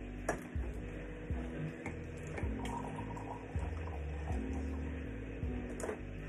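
Water running from a refrigerator's door dispenser into a cup, a steady hiss with a few light clicks, under background music with a regular beat.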